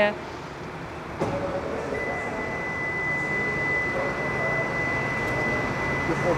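Indoor background noise: a steady hiss with faint distant voices. A click comes about a second in, and a thin, steady high-pitched tone starts about two seconds in.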